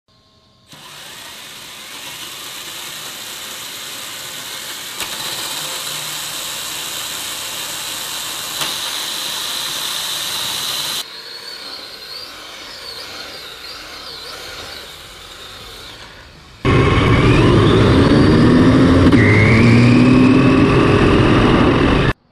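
Small two-cylinder engine of an 8th-scale RC car running, steady at first, then much louder from about three-quarters of the way in with repeated rising revs as the car drives.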